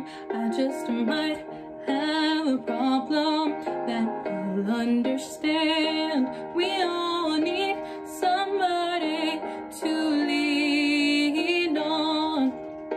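A young woman singing a slow, tender song solo, in phrases of a few seconds each with vibrato on the held notes and short breaks for breath between them.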